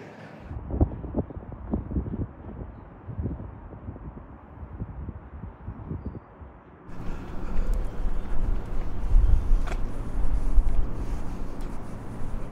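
Wind blowing on the microphone with road traffic noise from the bridge. About seven seconds in, the sound cuts abruptly to a louder, fuller wind and traffic rush.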